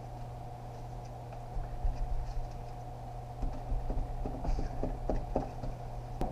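Scattered light clicks and taps of metal transmission parts being handled and worked loose during a 68RFE teardown, over a steady low hum.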